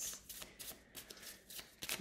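A deck of cards being shuffled by hand: faint, quick flicks and slides of card edges against each other.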